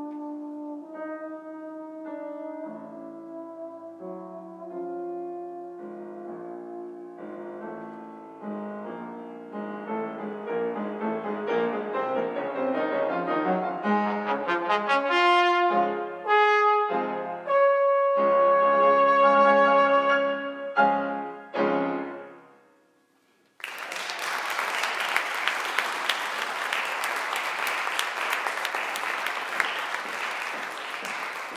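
Solo brass instrument with piano accompaniment playing a classical piece that grows louder toward a final held note and stops sharply. After about a second of silence, audience applause starts and carries on.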